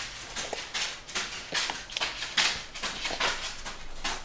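Toddlers eating at high chairs: irregular short smacking and tapping sounds of chewing and of small fingers picking food off silicone plates.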